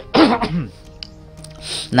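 A man clears his throat once into a microphone during a pause to drink, with soft background music.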